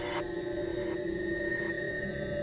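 Minimal electronic music: several steady held electronic tones, with a higher textured layer above them that cuts off abruptly shortly after the start.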